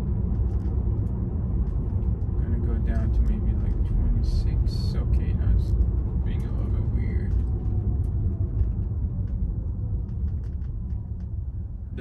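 Road and tyre rumble inside a Tesla Model 3's cabin while driving, low and steady, with a faint falling whine in the second half as the car slows.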